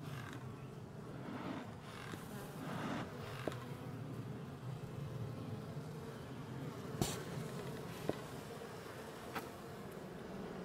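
Honeybees buzzing steadily around an open hive, with a few sharp clicks; the loudest click comes about seven seconds in.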